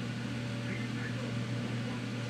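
A steady low hum with a thin higher tone above it and a constant hiss: the even drone of a running machine or electrical hum in a small room.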